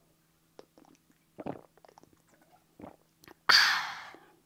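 A few faint clicks and soft rustles, then a loud, sharp exhale close to the microphone about three and a half seconds in, trailing off over half a second.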